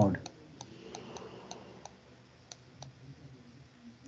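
Faint, irregular clicks of a computer mouse button, about eight in the first three seconds, as handwriting strokes are drawn on a digital whiteboard.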